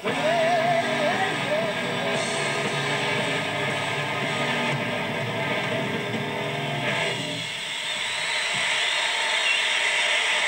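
Live rock band playing, heard from a TV: a sung line with vibrato over guitar and drums in the first two seconds, the band going on, then the low end dropping away about seven and a half seconds in, leaving a thinner, noisy wash.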